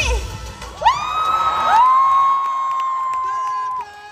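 A show's dance music cuts off, then several high-pitched voices let out long, held cheering shouts over crowd cheering. The shouts stop abruptly near the end.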